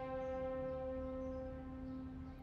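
Background score: a single sustained drone note, held steady with no change in pitch.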